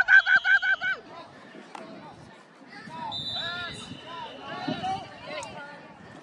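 A man shouting encouragement for about the first second, then quieter distant voices and chatter.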